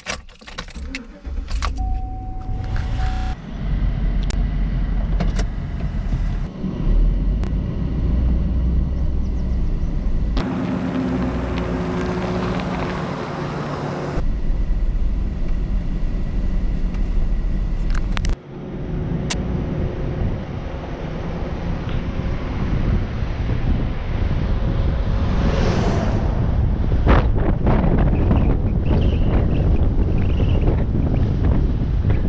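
Pickup truck started with the ignition key: a few clicks and a short tone, then the engine catches and runs. The engine keeps running as the truck drives off along a road, louder for a few seconds about ten seconds in.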